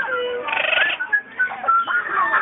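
Parrots calling, with short whistled notes and a harsh squawk about half a second in.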